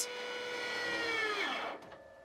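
Piano bass-string winding machine spinning a steel string while copper wire is wrapped around it: a steady whine of several tones that falls in pitch and dies away as the machine runs down, near the end.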